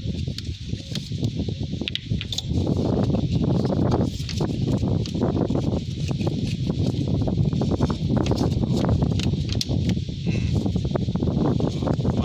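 Close rustling and scraping handling noise with many small clicks, as gloved hands work a MAP sensor and its plastic connector loose in an engine bay. It gets louder about two and a half seconds in.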